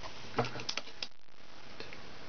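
A few light clicks and taps, about four in the first second and one faint one near the end, from rubber bands being handled and placed on the plastic pegs of a rainbow loom, over a faint steady hiss.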